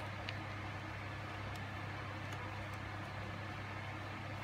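Steady low background hum with an even hiss, with one faint click about a third of a second in.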